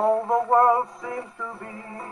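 A slightly warped Decca 78 rpm dance-band record playing on a Beltona wooden portable wind-up gramophone with a spearpoint needle. A male singer sings with vibrato over the orchestra, sliding up into a phrase at the start.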